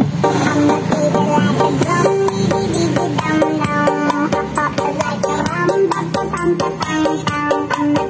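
Music with quick plucked notes over a drum rhythm, played through a small box speaker driven by a TPA3118 class-D amplifier board.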